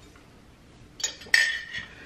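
A glass mason jar with a straw in it clinks twice about a second in, the second knock louder and ringing briefly, as the jar is lowered onto the counter.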